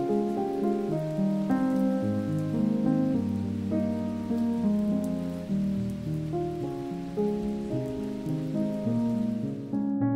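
Steady rain falling, heard over slow background keyboard music with long held notes; the rain stops suddenly at the end while the music carries on.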